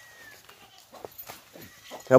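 A faint animal call, with light scattered rustles and clicks, in a quiet pause.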